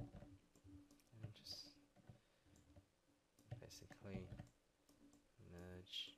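Faint, scattered clicks of a computer mouse and keyboard being worked, a few at a time.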